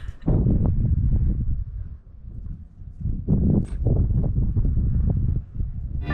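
Wind buffeting the microphone: a rough low rumble in gusts, with a lull about two seconds in.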